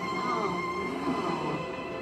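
Soft film-score music with gliding, bending string-like tones, over a steady high-pitched whine.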